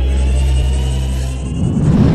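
Logo-intro music: a steady deep drone under a faint high tone that slowly rises in pitch, swelling into a loud rumbling whoosh near the end.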